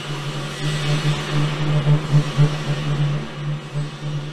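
A steady low drone with hiss above it, swelling and fading slightly: an eerie horror-film sound bed.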